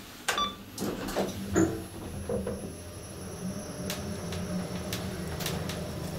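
KONE traction elevator car starting its descent: a few clicks and knocks in the first two seconds as it gets under way. Then a steady low hum with a faint high whine from the traction machine while the car travels down.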